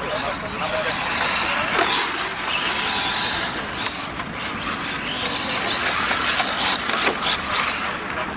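Radio-controlled model rally cars driving on a dirt track, with people talking in the background.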